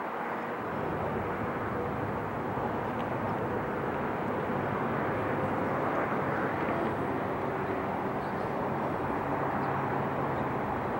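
Steady distant engine noise that swells a little over the first few seconds, with faint humming tones running through it.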